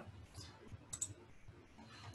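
A few faint clicks of computer keys being pressed.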